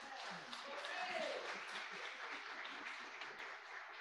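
Congregation applauding after a musical piece, fairly faint, with a voice calling out over the clapping about a second in.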